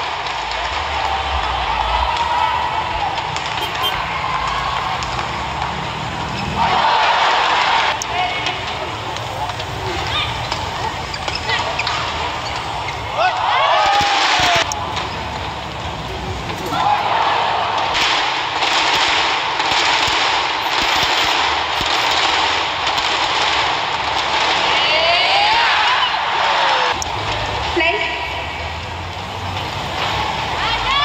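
Arena crowd noise at a badminton match: a dense wash of cheering and shouting that swells loudly several times, about seven seconds in, around fourteen seconds, and through most of the second half.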